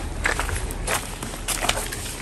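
Footsteps of someone walking on a stone path: a handful of short, uneven steps and scuffs.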